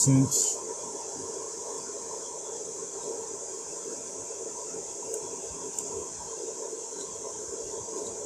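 Steady hum and hiss of a running fan, even throughout, with a word of speech at the very start.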